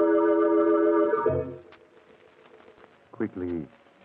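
Organ music holding sustained chords, which end about a second in with a brief low note; then near quiet before a man's voice begins near the end.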